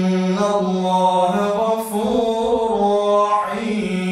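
A man's solo Quran recitation (tilawah) in a melodic chanting voice, drawing out long held notes with ornamented turns of pitch, ending on a long steady held note.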